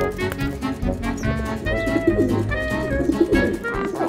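Background score with feral pigeons cooing over it, the low wavering coos strongest around the middle.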